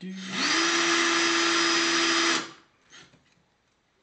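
Cordless drill spinning a pencil inside a hand-held pencil sharpener, shaving it to a point. The motor whines up about a third of a second in, runs steadily for about two seconds, then stops and winds down.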